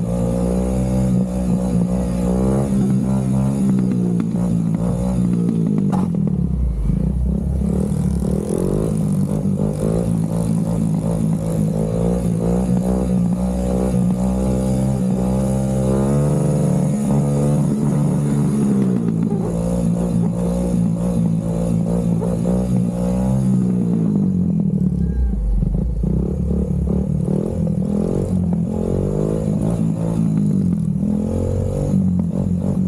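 Honda sport ATV engine running under throttle while riding. Its note drops and climbs again several times as the throttle is let off and opened back up.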